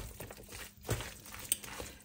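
Spoon stirring mayonnaise-dressed imitation crab salad in a plastic tub: faint, soft squishing and scraping, with a couple of light clicks about a second in and again a half-second later.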